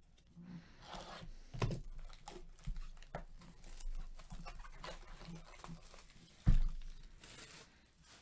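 Cardboard trading-card hobby box being torn open at its top flap, with scattered tearing and crinkling. There is a dull thump late on.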